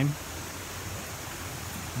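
Steady rushing of a fast-running stream, an even noise with no breaks.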